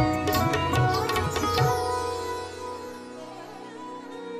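Live Pakistani folk ensemble playing an instrumental passage: hand-drum strokes with plucked strings and harmonium until a little under halfway, when the drumming stops and held notes ring on and slowly fade.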